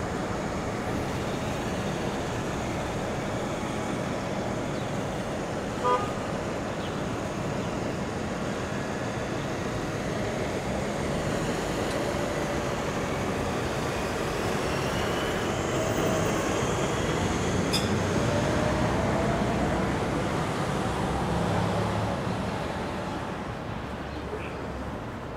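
City street traffic noise, a steady rush of passing vehicles. About six seconds in a short horn toot stands out, and in the second half a vehicle pulls away with a slowly rising whine as the traffic gets louder.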